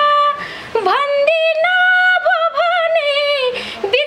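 A woman singing a Nepali dohori folk song in a high voice, holding long notes with quick ornamental turns and taking two short breaths.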